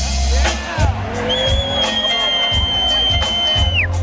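Live smooth-jazz band playing, with bass and drums underneath and a lead line that slides in pitch. A little over a second in, the lead holds one long high note, which drops away just before the end.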